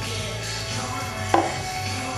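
Faint background music over a steady low hum, with one sharp knock about a second and a half in.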